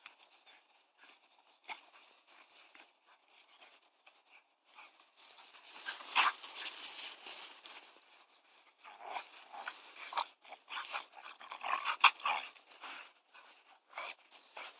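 Two dogs play-wrestling and bounding through deep snow: quick scuffling and crunching of snow, sparse at first and then in two busy bursts from about five seconds in.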